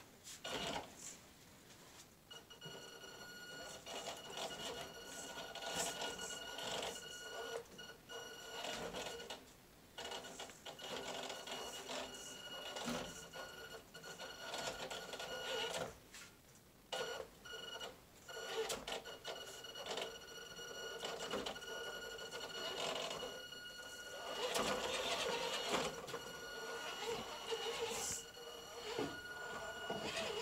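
Axial RC rock crawler's electric motor and geared drivetrain whining in stretches as it is throttled on and off, with the tyres and chassis clicking and knocking over wooden slats. The whine drops out briefly about ten and sixteen seconds in.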